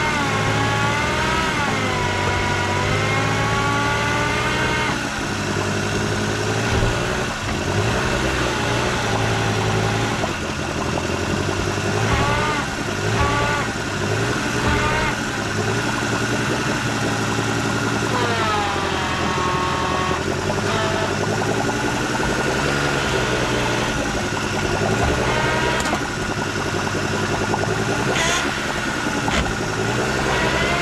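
Daihatsu Hijet mini truck engine revving up and dropping back again and again as the fully loaded truck, in four-wheel-drive low, tries to crawl out of a mud hole and stays stuck.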